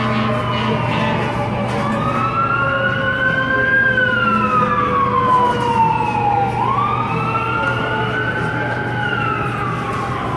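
Emergency vehicle siren in a slow wail, its pitch rising and falling twice, over the steady hum of street traffic.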